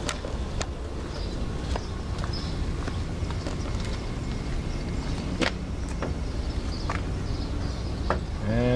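School bus engine idling with a steady low hum, with scattered footsteps and light clicks on pavement as someone walks alongside it.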